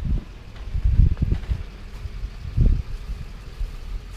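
Wind buffeting the camera microphone in three low gusts, over steady traffic noise from a major road close by.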